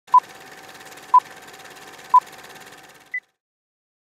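Film countdown leader sound effect: three short beeps a second apart at one pitch, then a higher final beep a little after three seconds, over a faint projector-style crackle and hum that cut off with the last beep.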